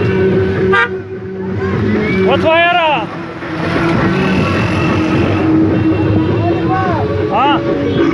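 Car horns honking in a slow-moving vehicle convoy, over engine and road noise, with voices calling out about two and a half seconds in and again near the end.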